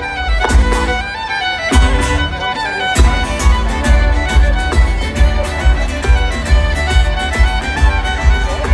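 Folk metal band playing live: a sustained lead melody over heavy drums and bass, recorded from within the crowd. The drums and bass drop out briefly twice in the first three seconds, each time coming back in on a heavy hit.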